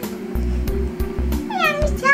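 Background music with a steady beat; about one and a half seconds in, a young girl lets out a high, wordless cry whose pitch swoops up and down.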